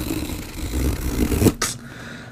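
Cardboard rip-tab tear strip being pulled along the GoPro Hero 9 Black retail box: a continuous ripping tear for about a second and a half, ending with a sharp click as the strip comes free.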